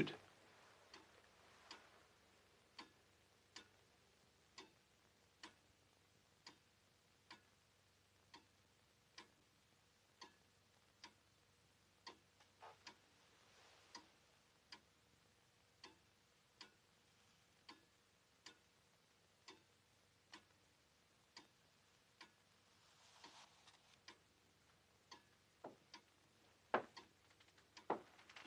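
A clock ticking faintly and slowly, about one tick a second, in an uneven tick-tock rhythm. A brief soft rustle comes near the end.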